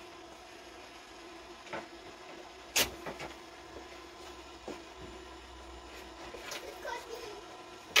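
A single sharp click about three seconds in, with a few lighter taps before and after it, over a faint steady hum.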